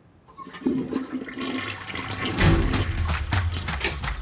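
Toilet flushing: a rush of water that starts a moment in and grows louder over the next couple of seconds.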